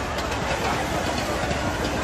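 Fire engine running steadily under a dense wash of outdoor noise.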